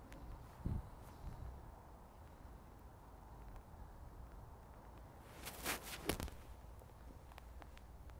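A 56-degree wedge striking through wet bunker sand: a short, sharp burst of sand splash about five and a half seconds in, with a second crack just after. A low, dull thump sounds near the start.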